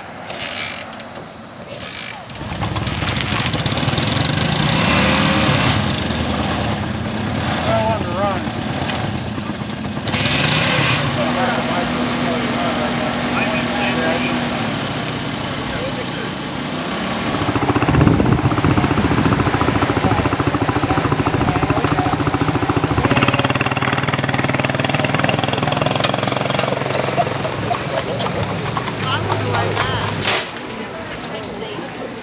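Small step-through motorcycle engines running at idle, with people talking around them.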